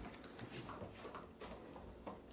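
Faint handling noise: a few light clicks and rustles of small clear plastic blister packs being moved about in the hands.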